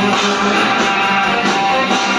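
Live rock band playing an instrumental passage led by electric guitars, with no singing.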